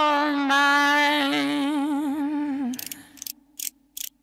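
The final long note of a sung vocal in the soundtrack, held with vibrato that widens before it fades out about two and a half seconds in. A short run of sharp mechanical clicks follows near the end.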